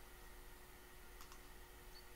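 A single computer mouse click, press and release in quick succession, about a second in; otherwise near silence with a faint steady hum.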